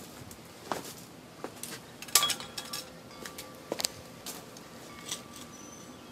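Metal hand trowel digging into stony soil, giving a series of irregular sharp clinks and scrapes, the loudest about two seconds in.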